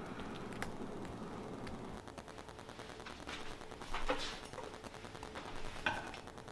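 Fingers scraping blood out along the backbone of a gutted rockfish: a run of faint, rapid wet clicks and scratches, getting denser about halfway through.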